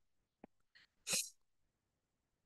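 A faint click, then about a second in a short, sharp breath noise from the presenter, over otherwise silent call audio.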